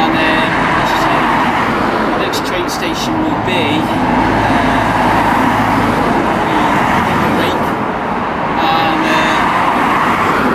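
Road traffic on a street: a steady noise of cars driving past, with a car passing close by near the end.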